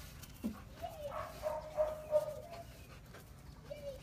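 A young dog whining: one long, high whine that starts about a second in and holds for nearly two seconds, then a short falling whine near the end.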